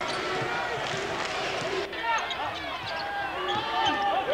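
Court sound from a televised basketball game: a basketball dribbling on the hardwood and sneakers squeaking over a steady murmur of crowd voices in the arena. It starts abruptly, with short high squeaks from about halfway through.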